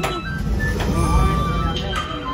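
Low rumble of handling noise on a phone microphone as it is swung around, over background music holding steady tones.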